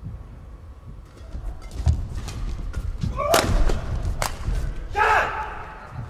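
Badminton doubles rally: sharp racket hits on the shuttlecock come quickly one after another from a couple of seconds in. There are shouts around three seconds in and again near the end as the point is won.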